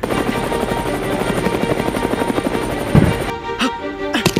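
Rapid steady chopping of a helicopter's rotor over background music. It starts abruptly, with a low thump about three seconds in.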